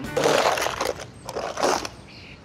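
Metal shovel blade scraping across a dirt floor, scooping up manure, in two strokes about a second apart.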